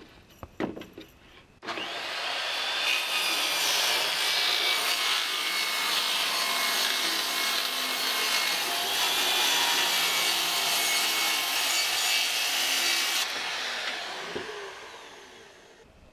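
Electric power saw cutting through a plywood sheet, starting a little under two seconds in after a few handling knocks and running steadily with a wavering whine for about eleven seconds, then winding down as the motor coasts to a stop.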